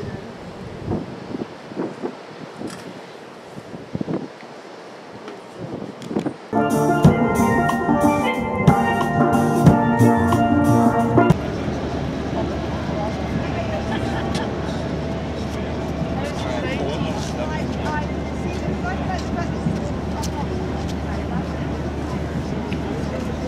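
Steel pan band playing loudly for about five seconds in the middle, many ringing notes struck in rhythm, cut off abruptly. Before it, quieter ambient sound with scattered knocks; after it, a steady outdoor hubbub of people talking over a low hum.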